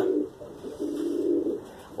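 Homing pigeon cooing: one low, steady coo lasting about half a second near the middle.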